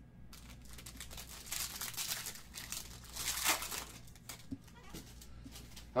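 Plastic wrapping around trading cards crinkling as it is handled and pulled open, with small clicks, heaviest from about one and a half to three and a half seconds in.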